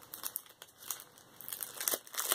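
Packaging crinkling as it is handled, in a few short, irregular crackles.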